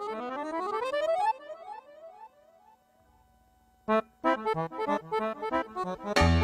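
Chromatic button accordion playing a fast improvised intro of rising runs that trail off about two seconds in into a held note. After a brief pause, a sharp accent about four seconds in starts a run of short, clipped chords.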